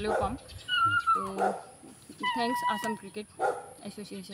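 A dog's calls: a falling cry about a second in and a longer, high held call a little after two seconds, with voices around it.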